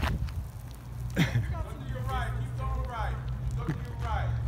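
Faint voices of people talking in the background, with a low steady rumble underneath.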